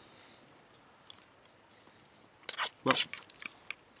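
A metal fork and camp bowl clinking and scraping: a quick cluster of short sharp clinks about halfway through, the loudest two a moment apart, after a low steady background.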